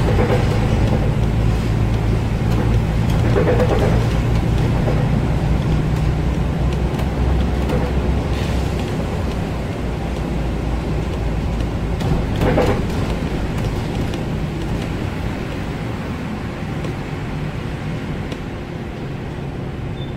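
Volvo 7000A articulated city bus heard from inside the cabin while driving: a steady diesel engine drone with tyre and road noise on a wet road. The engine note weakens after about nine seconds and the whole sound gets gradually quieter as the bus slows in traffic, with one brief louder rush about halfway through.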